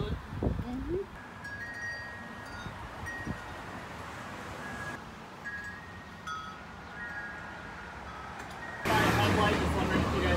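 Metal tube wind chime ringing, several clear notes sounding at irregular moments over a quiet background. About nine seconds in, a sudden louder rush of noise cuts in.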